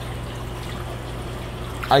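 Aquarium water trickling steadily over a constant low pump hum.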